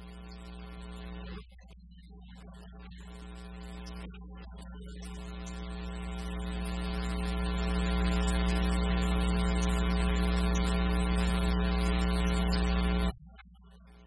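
Organ playing sustained chords over a deep bass note, in short held phrases that swell louder into a long final chord, which cuts off sharply about a second before the end.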